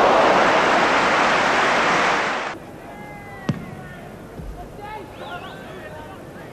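Football stadium crowd roaring in reaction to a shot on goal, cut off abruptly about two and a half seconds in. After that comes a much quieter crowd background with faint whistles and one sharp click.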